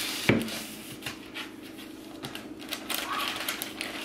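A roll of parchment paper being pushed into a plastic wrap-organizer box: one sharp knock about a quarter second in, then quick light rustling and ticking as the paper is worked into the slot.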